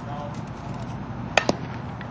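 Two sharp cracks of a softball impact, a split second apart, about one and a half seconds in.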